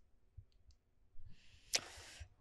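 Quiet room picked up by a handheld microphone: a few faint clicks, then near the end a short breath-like hiss with one sharper click.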